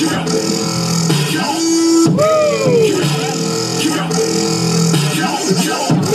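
Electronic music with held low bass notes and sliding tones that swoop up and fall away, the pattern repeating about every four seconds.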